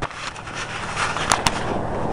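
A car running on a snowy street: a steady low engine hum under a broad hiss, with two sharp clicks close together just past the middle.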